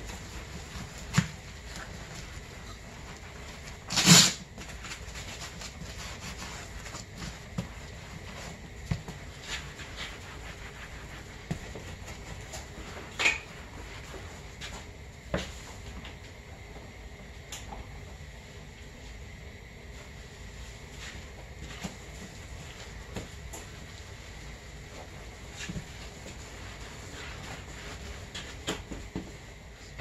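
Wet sponge wiping soapy water over a vinyl snowmobile seat cover: faint rubbing and squishing over a low steady background, with scattered light clicks and one short, louder noise about four seconds in.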